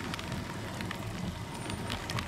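Light rain falling outdoors: a steady hiss with faint small crackles of drops and a low rumble underneath.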